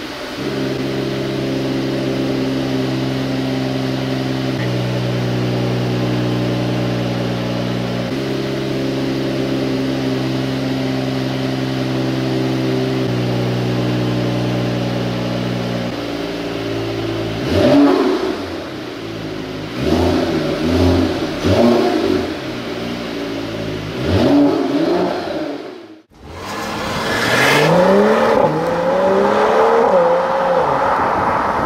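Mercedes-AMG GT 43's 3.0-litre inline-six idling steadily, its idle speed stepping down and up a few times. A little past halfway it is revved in several quick blips. After a sudden break near the end, the car is heard under way, the engine note rising in several sweeps as it accelerates.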